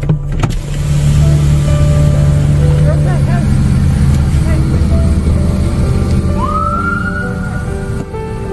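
Motor vehicle engine idling with a steady low rumble. Near the end a tone rises quickly and then holds steady, like a siren starting up.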